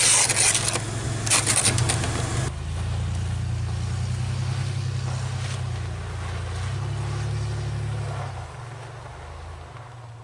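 An ice scraper rasping in quick strokes across a frosted car windshield for the first two seconds or so. Then the engine of a small SUV runs steadily as it drives off through snow, fading away near the end.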